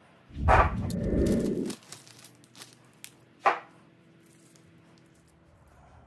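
Metal clicks and clunks of a chrome Harley-Davidson detachable sissy bar being set onto its docking hardware, with a loud low thump about half a second in. About three and a half seconds in comes the loudest, sharpest metallic clunk, which rings briefly afterwards as the bar seats on the docking points.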